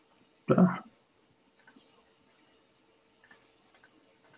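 A short, loud bump about half a second in, then faint, scattered small clicks and taps from computer input.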